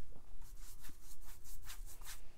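Watercolour brush rubbing through wet paint in the palette and stroking a wash onto cold-pressed cotton paper: a quick run of short, soft swishes, about four or five a second.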